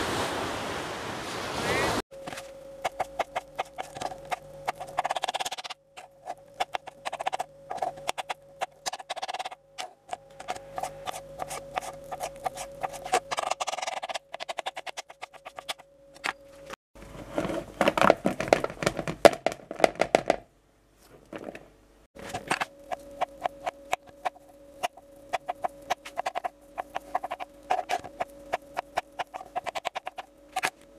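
Sea surf for about two seconds, then a knife dicing boiled carrots and potatoes on a plastic cutting board: quick runs of sharp chops with short pauses, and one longer pause a little after the middle.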